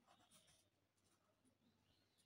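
Very faint scratching of a ballpoint pen writing in a squared paper notebook, a few short strokes.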